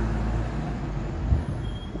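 Steady low rumble of outdoor background noise, with a brief thump about a second and a half in.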